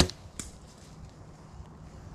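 Mathews Triax compound bow being shot: one sharp, loud snap of the string and limbs on release, then a second, fainter crack about half a second later.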